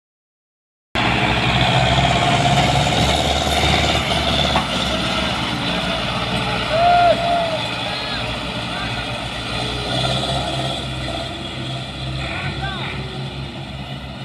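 Diesel farm tractor engine pulling a heavy trolley load of sugarcane, running steadily under load and fading gradually as it moves away. It starts after about a second of silence.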